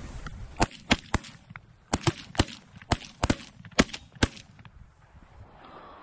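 Several shotguns firing in a volley at a flock of ducks: about ten sharp blasts, irregularly spaced and sometimes overlapping, over the first four seconds or so, then the shooting stops.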